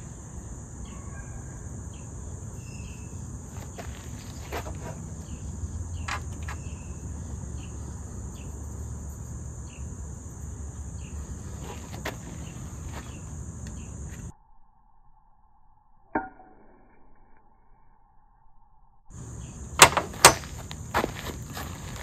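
Steady high buzzing of insects outdoors, with a few light clicks of handling. The sound drops out almost completely for about five seconds, then comes back. About two seconds before the end come two sharp strikes of a carbon-steel striker on chert, a fraction of a second apart: a flint-and-steel strike throwing sparks onto char cloth.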